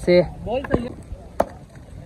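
A cricket bat knocking twice against the road, two sharp single knocks a little over half a second apart, the second one louder. Brief speech at the start.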